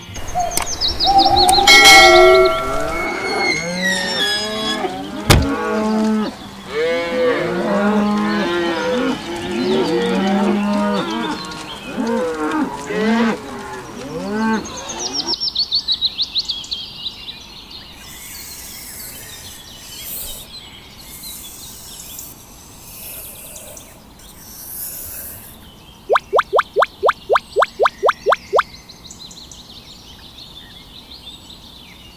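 Cattle mooing over and over, many short calls overlapping like a herd, for about the first half. After that, high chirping takes over, and near the end comes a quick run of about a dozen sharp, evenly spaced pulses.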